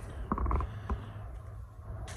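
A brief creak about half a second in, over a steady low rumble.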